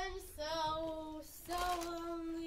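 A young girl's voice singing long held notes: one note of about a second, a short break, then another held note.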